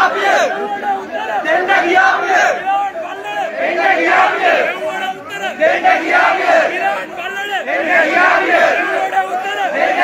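A large crowd of men shouting over each other continuously, many voices at once with no single voice standing out.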